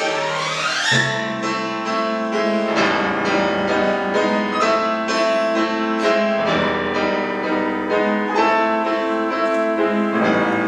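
Concert grand piano with symphony orchestra: the piano sweeps up in a fast run in the first second, then strikes a string of sharp notes and chords over sustained orchestral sound.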